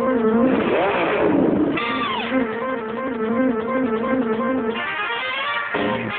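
Instrumental intro of a 1960s cartoon theme song: a repeating guitar-led riff, broken about half a second in by a swooping sound that rises and falls, then a falling glide, before the riff returns and the band fills out near the end.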